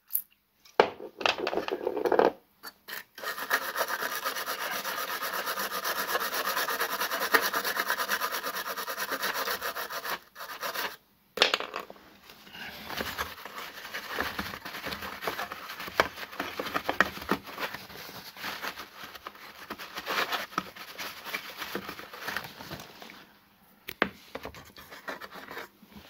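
Isopropyl alcohol sprayed from an aerosol can onto a circuit board in a few short bursts, then a long stretch of steady scrubbing, and after a short pause about ten seconds in, irregular rubbing and scratching as the board is wiped.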